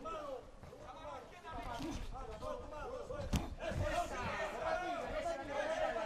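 Several voices calling out from ringside during a boxing round, overlapping and getting busier after the first couple of seconds, with a single sharp smack just past halfway.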